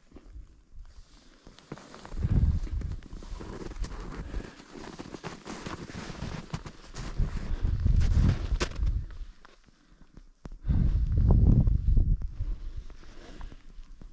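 Gusts of wind buffeting the microphone in three deep, loud swells, with scattered crunching footsteps and clicks over snow and rock between them.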